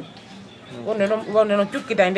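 A person speaking, starting after a brief pause in the first half-second.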